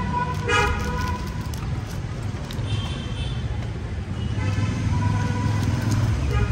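Vehicle horns tooting three times, the middle toot higher-pitched, over the steady low rumble of road traffic.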